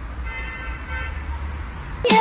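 A small plastic whistle held in a golden retriever's mouth, sounded by the dog's breath, gives one steady toot lasting about a second.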